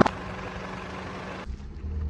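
A car's engine idling with a steady low hum, with no crunching. About one and a half seconds in, the sound changes abruptly to a duller, deeper rumble.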